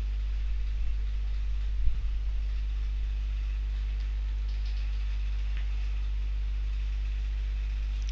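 A steady low hum with a few evenly spaced higher tones above it, and a short faint thump about two seconds in.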